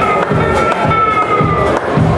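Live blues band playing an instrumental passage: electric guitar holding long notes over bass and a steady drum beat.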